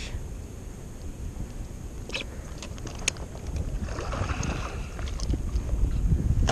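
Wind rumbling on the microphone, with a few light knocks and a brief burst of splashing about four seconds in from a hooked snakehead thrashing at the surface beside a kayak.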